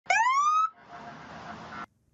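A short rising whoop at the start. It gives way to a steady hiss of highway traffic and wind, heard from a vehicle moving in a caravan, which cuts off abruptly near the end.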